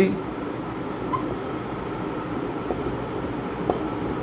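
A whiteboard marker squeaking and tapping faintly as a word is written, over a steady background hum.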